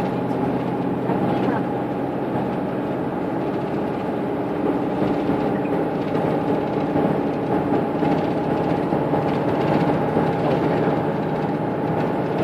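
Cabin noise inside a moving road vehicle: steady engine and road hum with a constant higher whine running through it.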